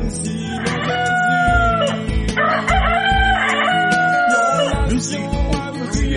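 Music with a steady drum beat, over which a rooster sound effect crows twice, each crow a long held call.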